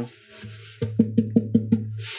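Background music: a steady low tone, joined about a second in by a quick, even run of wooden knocks, about five or six a second.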